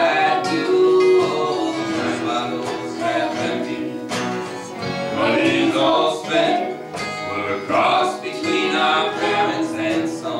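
Live acoustic folk band playing: banjo and acoustic guitars strumming, with a harmonica carrying the melody in the middle of the passage.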